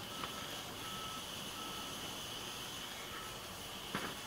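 Oxy-acetylene torch flame hissing steadily as it heats the steel inner pin of a rusted leaf spring bushing to burn out the rubber.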